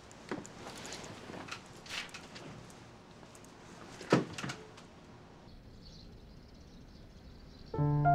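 A few scattered soft knocks, the loudest a single thunk about four seconds in. Near the end, music comes in with held chord tones.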